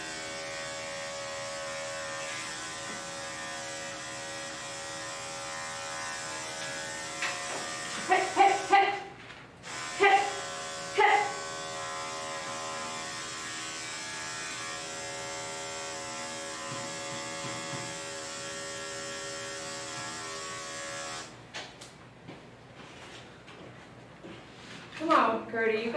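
Andis five-speed electric dog clipper running with a steady hum, switched off about 21 seconds in. A few brief vocal sounds break in over it around eight to eleven seconds in.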